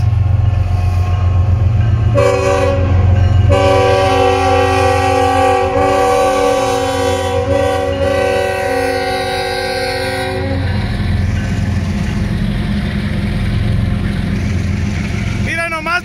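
Diesel-electric freight locomotives, among them a Norfolk Southern SD70ACe, rumbling steadily as they pass. About two seconds in, a locomotive air horn sounds a short blast, then a long one of about seven seconds, in a chord of several notes.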